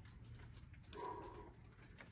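A faint animal call about a second in, lasting about half a second, one of a series repeating every second and a half or so, over a low steady hum.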